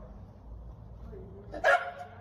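A small dog barks once, a short loud bark near the end.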